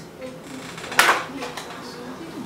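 A videotape and its plastic case being handled, with one sharp plastic clack about a second in as the case is opened or the tape taken out.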